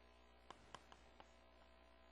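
Near silence: a steady low electrical hum, with a few faint clicks in the first half.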